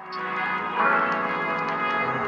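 Background music of many sustained, ringing bell-like tones, growing louder in the first second.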